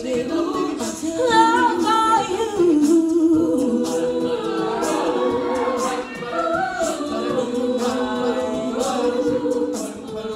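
Women's a cappella group singing: two lead voices together in harmony over a sustained backing of voices, with vocal percussion ticking through it.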